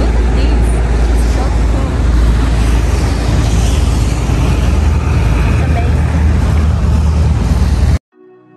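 Wooden motorboat water taxi running at speed: a loud, steady engine rumble mixed with rushing water and wind buffeting the microphone.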